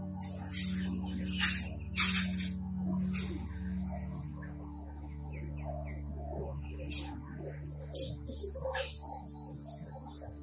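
Background music with steady drone tones, broken in the first three seconds by several short, loud bursts of hiss from a garden hose spray nozzle as water starts to come through. Fainter brief spurts follow later.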